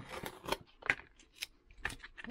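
A handful of sharp, irregular clicks and taps from small hard objects being handled on a workbench, about five in two seconds.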